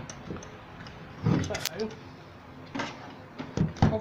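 Wooden picture frames with plastic backing boards knocking and clattering against a wooden table as the joined set is handled and turned over: a cluster of sharp knocks about a second in, then a few more near the end.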